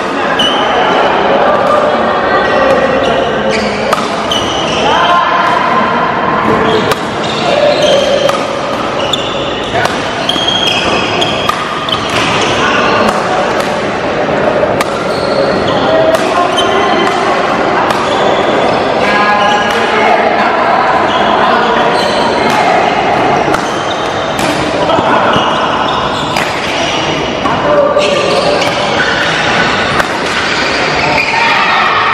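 Badminton rally: rackets strike the shuttlecock back and forth with sharp hits about every second, echoing in a large hall.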